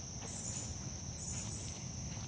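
Insect chorus: a steady high-pitched drone, with a second, higher insect call pulsing about once a second over it.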